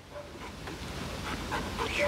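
Black Labrador retriever panting, a breathy noise that slowly grows louder.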